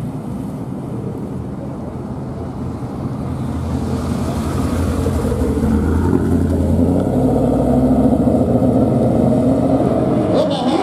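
Two drag cars' engines running at the starting line, getting louder from about four seconds in as they are revved for the launch.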